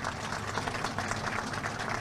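An audience applauding, many hands clapping at once in a steady dense clatter.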